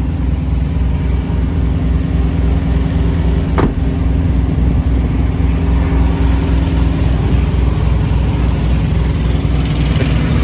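Small diesel engine of a semi truck's auxiliary power unit (APU) running steadily, a loud, even low throb with a hum above it, keeping the sleeper cab cooled or heated without idling the truck's main engine. A single sharp click about a third of the way in.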